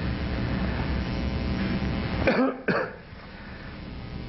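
A man coughs twice in quick succession about two seconds in, over a steady low room hum.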